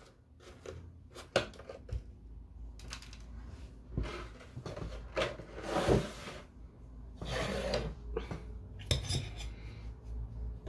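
Clear plastic packaging tray being handled as an action figure and its throne are pried out: scattered clicks and taps with short crackling rustles.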